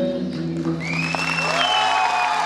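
The song's last held notes end, and audience applause breaks out about a second in, with high whistles rising and then holding over the clapping.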